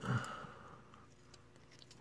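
Low room tone with a few faint, small clicks.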